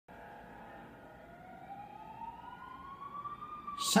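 Emergency-vehicle siren wailing, one slow upward sweep in pitch that peaks and starts to fall near the end, growing gradually louder.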